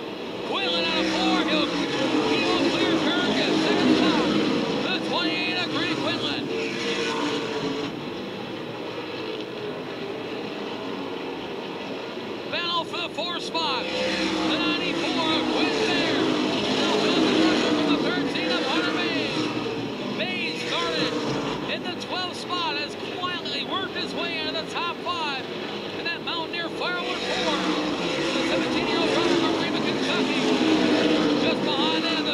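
Asphalt late model stock cars' V8 engines at racing speed. The engine notes rise and fall in pitch as cars come by, and the sound swells and fades three times as the field laps the oval.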